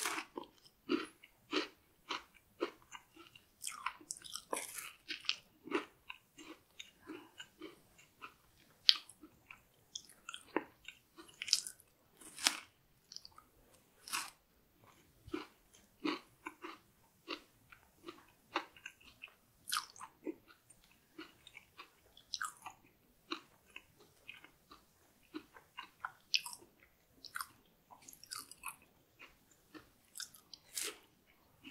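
Close-miked biting and chewing of a chocolate-topped dessert bar: the chocolate layer cracks under the teeth, followed by irregular moist chewing clicks, with a few louder crunches among them.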